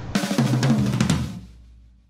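Drum kit break in a rock song: a burst of snare, bass drum and cymbal hits that fades away over about a second, leaving a moment of near quiet before the drums come in again.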